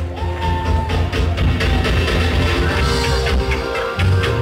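Rock band playing live and loud, with drums, bass and electric guitar.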